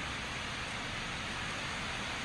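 Steady, even hiss of room noise, with no distinct event.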